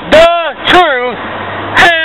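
A man's voice shouting loudly in three short, strained bursts, the words not caught. A faint low engine hum runs underneath.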